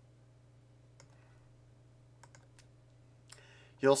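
A few faint computer mouse clicks over a low, steady electrical hum: one about a second in, then three close together midway. A short breath follows, just before the voice returns.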